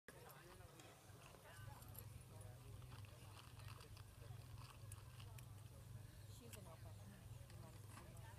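Faint, distant human voices, likely a handler calling to the dog, over a steady low hum, with scattered light clicks.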